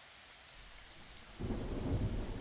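A faint steady hiss, then a low rumble that swells suddenly about one and a half seconds in and carries on.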